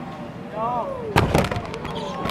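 A short call from a voice, then a sharp, heavy impact a little over a second in, the loudest sound, followed by a brief rattle: a scooter rider and scooter crash-landing on the mega ramp's landing ramp after a flip.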